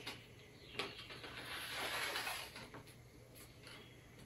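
A page of a hardcover picture book being turned: a light tap, then a soft papery swish lasting about a second.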